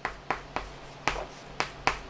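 Chalk writing on a chalkboard: about six sharp, short taps of the chalk striking the board as characters are written.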